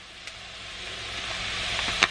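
Diced sweet potatoes and vegetables sizzling in a pot on the stove, growing steadily louder.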